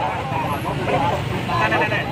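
Several men's voices talking over one another in a jostling crowd, on top of a steady low rumble.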